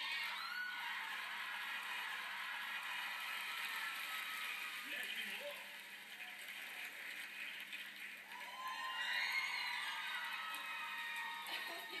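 Studio audience cheering and whooping through a television speaker, with no clear words, swelling again about two-thirds of the way in.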